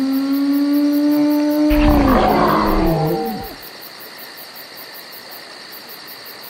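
A man's long held yell breaks, about two seconds in, into a rough, noisy roar with a deep rumble underneath. Its pitch sags and wavers before it stops about three and a half seconds in, leaving faint hiss.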